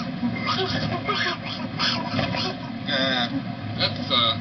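Men's voices laughing and making wordless vocal sounds, with a wavering held note about three seconds in.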